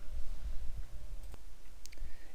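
A pause in the narration: a steady low hum with a few faint, isolated clicks.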